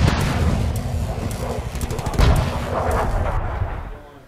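Loud edited-in booming, explosion-like hits with a heavy low rumble, starting suddenly and loudest about two seconds in.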